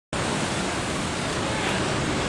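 Steady rushing noise of ocean surf breaking on a rocky shore.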